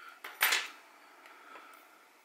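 A single short plastic-and-metal clack about half a second in as a watch movement in a plastic movement holder is picked up and handled on the bench, followed by a few faint ticks.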